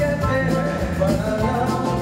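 Live band music with a man singing into a handheld microphone, over drums and backing instruments.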